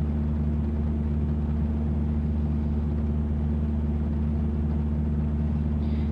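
Steady low hum of an idling engine, a few fixed low tones holding at an even level with no change.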